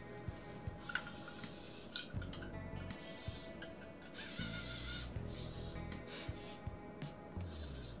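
Dynamixel AX-12A robot-arm servos whirring in several short, high-pitched bursts as the arm swings round carrying an object on its electromagnet, with a few faint ticks; quiet background music plays underneath.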